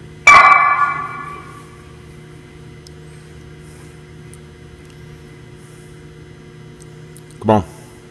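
A single sharp metal clang from the loaded barbell as a plate is handled at the sleeve, ringing out for about a second before fading. A steady low hum runs underneath, and a brief voice comes near the end.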